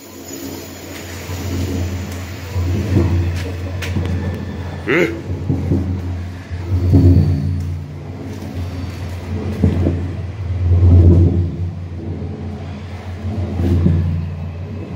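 Train passing on the tracks directly above a corrugated steel culvert underpass, heard from inside the pipe: a steady low rumble with engine tones, swelling and easing every couple of seconds.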